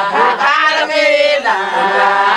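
A group of women singing and chanting together, several voices overlapping at once.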